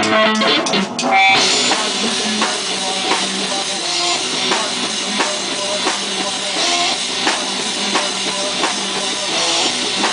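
A live rock band playing: electric guitar and bass guitar over a steady drum-kit beat, loud and unamplified by any announcer, with no singing.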